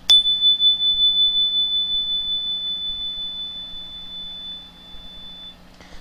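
A chime struck once, ringing a single clear high tone of about 3500 Hz that slowly fades out over about five and a half seconds.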